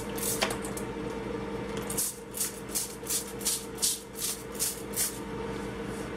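Trigger spray bottle spritzing a rack of ribs: a couple of single short hissing sprays near the start, then a quick run of about nine sprays, roughly three a second, from about two seconds in.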